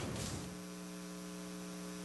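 Steady low electrical hum: a buzz made of several even tones that stands out clearly once the last spoken word fades, about half a second in.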